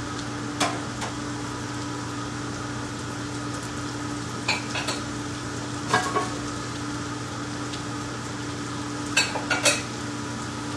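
Diced butternut squash and sugar pie pumpkin sizzling in brown butter and onions in a hot sauté pan. A few sharp clinks and scrapes of the bowl and utensils against the pan are heard, the loudest near the end, over a steady low hum.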